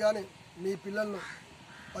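A man speaking in short phrases, with a crow cawing faintly in the background.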